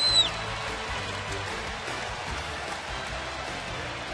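A referee's whistle cuts off just after the start, then music plays over the arena's steady crowd noise during the stoppage.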